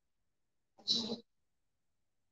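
One brief vocal sound from a person about a second in, a short hissy breath or syllable lasting about a third of a second; otherwise silence.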